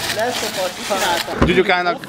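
Young men's voices talking and reacting, ending in a loud, high-pitched shout of "Ó!" near the end. Just before the shout there is a single short low thump.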